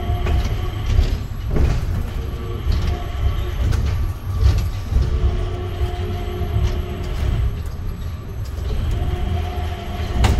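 Cabin noise of the Changi Airport Skytrain, a rubber-tyred automated people mover, running along its elevated guideway: a steady low rumble under a hum of several steady tones that fades out and returns. A few sharp knocks come through, one at about a second and a half in.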